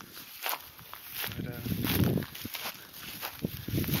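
Footsteps walking through dry grass, about two steps a second.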